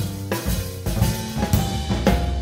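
Big band swing jazz with the drum kit to the fore: snare, bass drum and cymbal hits over bass and sustained instrument notes.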